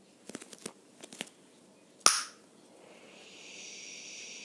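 Small handling sounds: a few faint clicks and crinkles, then one loud sharp snap about two seconds in, followed near the end by a steady high hiss.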